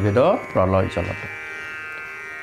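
A man's voice speaking for about the first second, then pausing, over a steady high buzzing drone that runs on unbroken beneath it.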